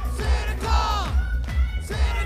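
Metal band playing live through a venue PA, a kick drum pulsing about four times a second, with loud shouted voices over the music.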